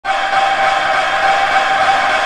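Held synthesizer chord at the start of an 80s pop song, a steady sustained pad of several tones sounding together, with no drums yet.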